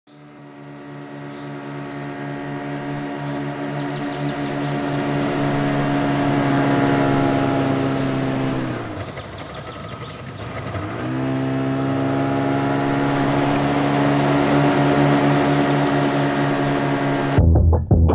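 Jet ski engine running steadily and growing louder over the first several seconds. About halfway through, its pitch sinks and the sound thins, then it revs back up to a steady run. Shortly before the end it cuts off suddenly as the rock song begins.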